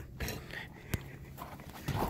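2010 Ford Mustang engine idling after a cold start, a faint steady low hum heard from inside the cabin, with a single sharp click about a second in.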